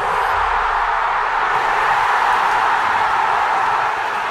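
A packed crowd cheering: one loud, steady roar of many voices with no single voice standing out.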